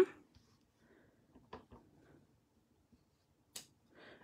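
Mostly quiet table-top handling during rubber stamping: a few faint taps about a second and a half in and one sharp click near the end, from paper and a clear acrylic stamp block being handled.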